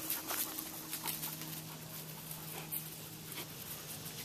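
Faint sounds of dogs moving close by, with scattered light ticks and scuffs over a faint, low, steady hum.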